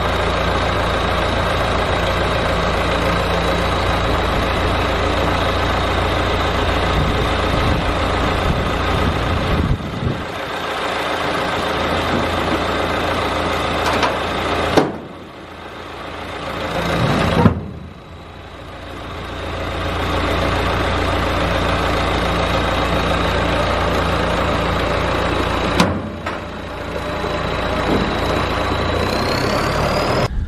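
John Deere loader tractor's diesel engine running steadily while the loader handles a seed box. The engine eases off twice near the middle, and a few sharp knocks sound as the box is lowered onto the tender.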